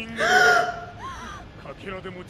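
A short, high-pitched gasp of shock about half a second in, over quieter dialogue.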